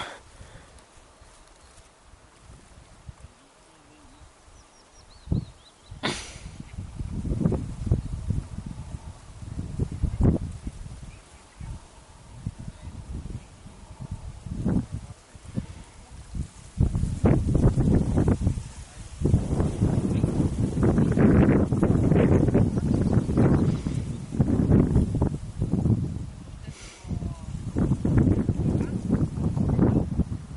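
Irregular low rumbling and rustling on the camera's microphone, in uneven surges that start about five seconds in and are strongest in the second half, with quieter gaps between.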